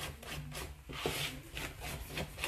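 Red silicone spatula stirring and scraping thick flour batter in a bowl: a quick run of rubbing strokes, about four or five a second.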